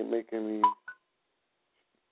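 A voice over a telephone line speaks for about half a second and is followed by two short electronic beeps, like phone keypad tones.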